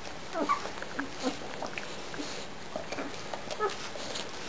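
Newborn German Shepherd puppies, nine days old, squeaking and whimpering while nursing: a few short, high cries, the loudest about half a second in and near the end, with small clicks between.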